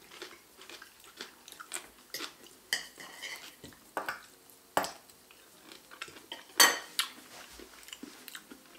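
Knife and fork clinking and scraping against ceramic plates in irregular sharp clinks, the loudest near the end, with some chewing in between.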